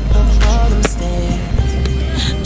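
R&B song with deep bass and a steady beat of sharp drum hits.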